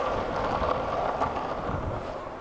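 Skateboard wheels rolling fast on asphalt: a steady rolling rush that eases slightly toward the end.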